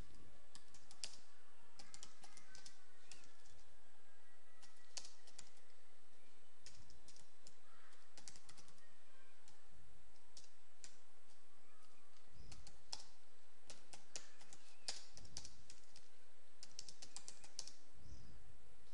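Computer keyboard being typed on slowly: irregular keystroke clicks in short runs with pauses between, over a steady faint hiss.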